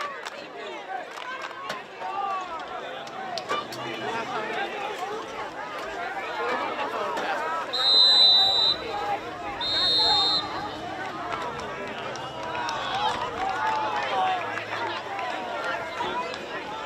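Two blasts of a referee's whistle, each about a second long and about two seconds apart, over the steady chatter and calls of players and spectators on the field.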